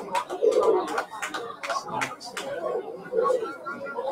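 Indistinct chatter of people talking near the microphone, with scattered short clicks and knocks.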